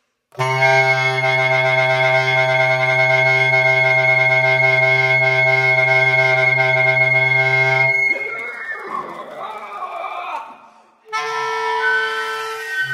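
Bass clarinet and flute hold one loud, steady chord with a deep low note for about eight seconds, then cut off together. A breathy, wavering, noisier passage follows for about three seconds and fades, and a new held chord begins near the end.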